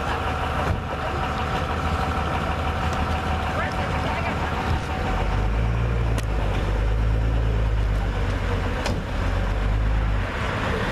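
Lifted Jeep Wrangler's engine running at a steady idle, its exhaust rumble growing deeper and louder about five seconds in, with a couple of light clicks.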